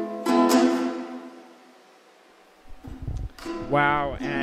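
Closing chords of an acoustic song on a plucked-string instrument ring out and fade to silence about two seconds in. Near the end a voice starts.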